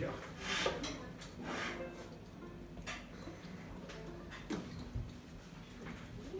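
Faint voices in a quiet room, with a few soft knocks and rustles spread through it; the band is not playing.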